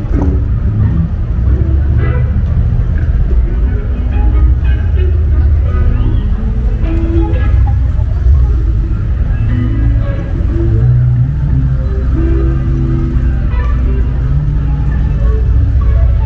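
Busy city street ambience: a steady low rumble of traffic, with passers-by talking and music playing.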